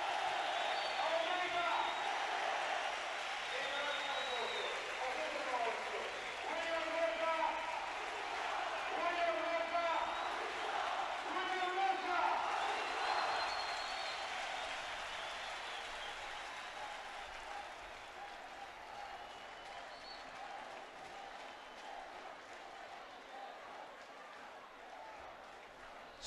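Large stadium crowd applauding and cheering, with voices shouting or chanting among the clapping. The crowd noise fades gradually over the second half.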